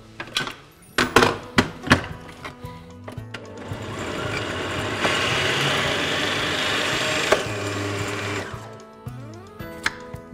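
A few clicks and knocks as the food processor's bowl and lid are set in place, then its motor runs for about five seconds, chopping charred tomato, pepper and onion into a coarse salsa, and winds down.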